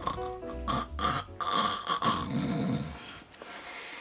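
Background piano music ends in the first second, then a man snores in his sleep: two long snores.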